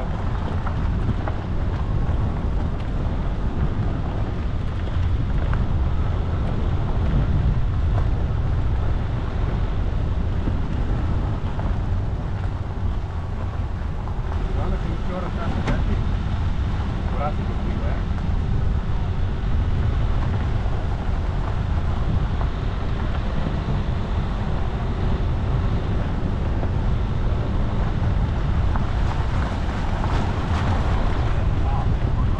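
A vehicle driving along a gravel forest road: a steady low engine and tyre rumble, with wind on the microphone and a few sharp clicks from stones and gravel.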